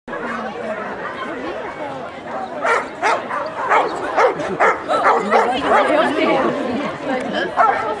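Dog barking repeatedly as it runs an agility course, short sharp barks coming about twice a second from a few seconds in, over the steady chatter of a crowd.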